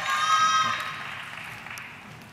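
Audience cheering and whooping, with applause that dies away through the second half.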